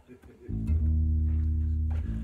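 Electric bass guitar played through an amp, one low note held for about a second and a half, starting about half a second in and cut off just after the end.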